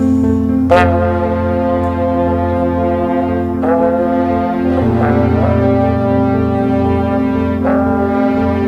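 French horns playing long held notes over a steady low sustained tone, with new notes entering about a second in, near four seconds, and again near the end.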